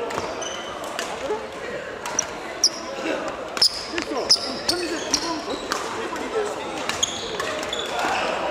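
Badminton hall sounds: many short, sharp racket-on-shuttlecock hits and brief high squeaks of court shoes on the sports floor, ringing in a large hall, with voices in the background.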